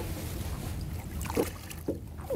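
Boat's outboard motor running steadily at trolling speed, a low even hum.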